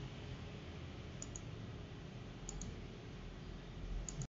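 Computer mouse button clicking: three pairs of short, light clicks, about a second in, about two and a half seconds in, and at the end, over a steady low room hum.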